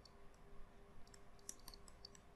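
Faint, irregular light clicks of a stylus tapping on a pen tablet as words are handwritten, over a faint steady hum.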